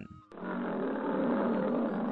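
A lion roaring: one long, rough roar that starts about a third of a second in, holds steady and cuts off abruptly.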